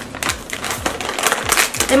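A plastic chip bag crinkling in irregular crackles as it is handled and gripped at the top, ready to be torn open.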